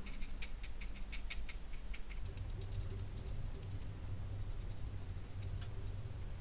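Watercolour brush dabbing paint onto paper, heard as faint, irregular soft ticks. A low steady hum comes in about two seconds in.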